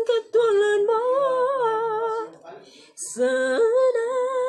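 A person singing unaccompanied in a high voice, holding long notes that waver. There are two phrases, with a short break a little past the midpoint.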